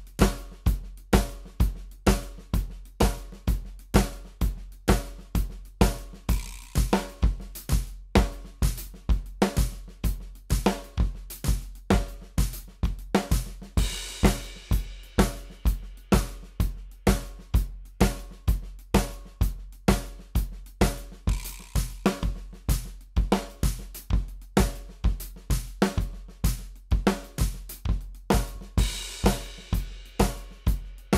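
Drum kit played at about 128 beats per minute: snare, hi-hat and cymbals in triplet paradiddle patterns over a steady bass drum beat, about two strong strokes a second.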